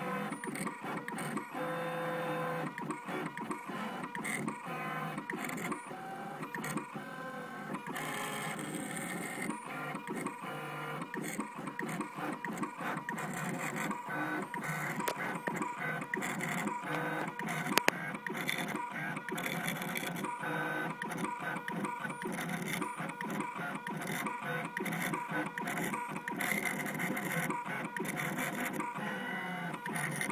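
Gravograph IM4 engraving machine at work, diamond-drag engraving anodized aluminum: its motors whine in short tones that keep changing pitch as the head and table move, with one sharp click a little past halfway.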